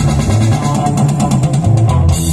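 Live street band playing, with bass and guitar underneath and a fast run of rapid, evenly spaced strokes that stops suddenly at the end.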